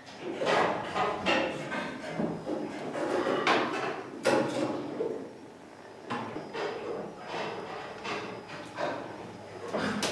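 Irregular knocks and clunks, a few sharp ones standing out and some softer ones between, with no steady rhythm.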